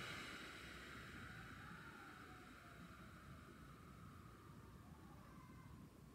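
A faint, slow exhale that fades gradually over about six seconds: the long out-breath of a diaphragmatic breathing drill, the exhale held to twice the length of the four-second inhale.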